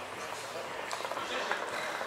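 Faint, indistinct background voices over steady room noise, with no one talking close to the microphone.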